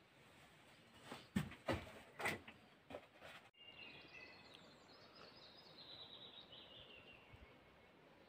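A few sharp knocks and thumps in a small wooden room, then small birds chirping and singing in a forest from about halfway through.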